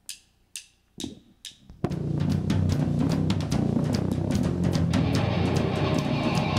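Four evenly spaced clicks about two a second, a drummer's count-in, then a nu-metal band comes in at full volume just under two seconds in, with heavy kick drum and drum kit loudest over guitars and bass.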